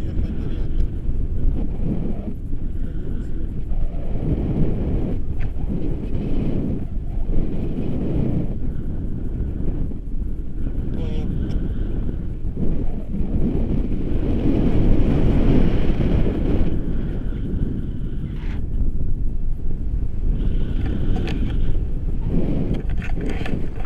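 Wind from a paraglider's flight buffeting the camera microphone: a low rumble that keeps gusting up and down.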